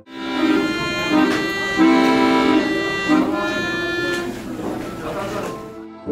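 Accordion playing a melody over chords. It dies away shortly before the end.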